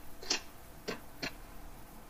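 Three short clicks in the first second and a half, faint over a low steady background.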